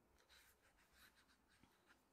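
Near silence with a few faint, soft scratches of a watercolor brush.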